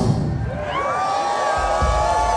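A rock band's loud music cuts off, then a concert crowd cheers, whoops and whistles.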